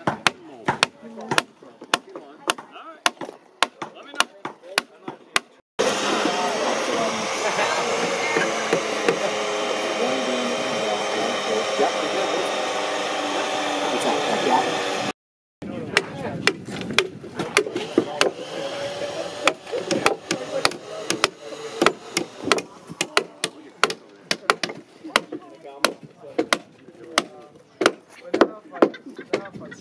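A wooden mallet repeatedly striking wooden pegs, driving them into the mortise-and-tenon joints of a hand-hewn timber frame, as a fast run of sharp knocks. In the middle, for about nine seconds, a louder, steady continuous sound takes over before the knocking resumes.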